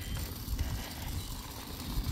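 A stroller's wheels rolling along, a low steady rumble.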